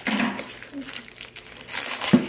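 Plastic packaging crinkling as it is cut with scissors and pulled open, with a louder stretch of crinkling near the end.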